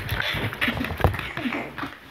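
Dough being handled and pressed on a wooden board: soft thumps and rubbing, with a sharp tap about a second in, under faint children's voices.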